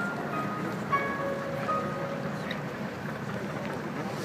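Girls' choir singing long held notes over a steady background of noise.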